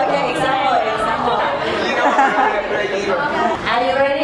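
Several people talking at once: students chattering in a large room.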